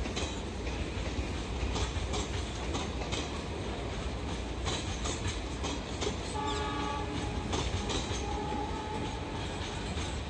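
Indian Railways passenger train coaches rolling past on a far track: a steady rumble with wheel clatter over the rail joints. A train horn sounds for about a second, starting about six seconds in, and a shorter second note follows near nine seconds.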